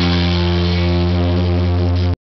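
Live funk band holding the song's closing chord: one steady sustained chord, with electric guitar and bass ringing and no drums.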